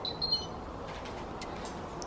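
Electrolux front-loading washing machine's control panel giving a few short, high electronic beeps near the start as its program dial is turned.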